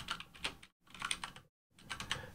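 Typing on a computer keyboard: quick runs of key clicks broken by brief pauses.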